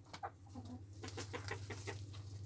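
Faint short bird calls, a quick irregular string of them, over a steady low hum.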